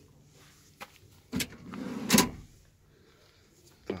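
A click and a knock, then a shuffling rustle that ends in a loud thump about two seconds in, from handling inside a van's cab.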